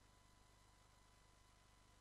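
Near silence: only faint, steady background hiss and hum.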